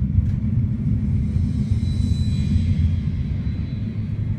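A steady, loud low rumble with little sound above it.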